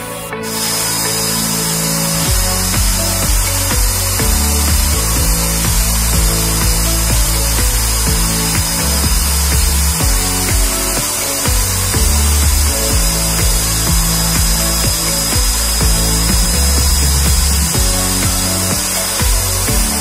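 Corded electric drill starting about half a second in and running steadily with a high whine as it bores a hole through a bicycle frame for internal routing of the rear brake cable, over background music with a beat.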